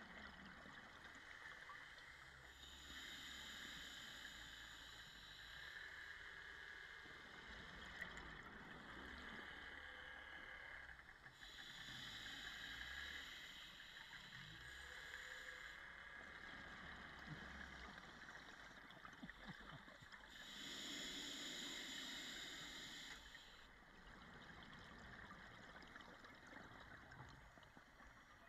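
Faint underwater bubbling of a scuba diver's regulator exhaust: three bursts of breath bubbles, each a few seconds long and about nine seconds apart, the rhythm of slow breathing on open-circuit scuba.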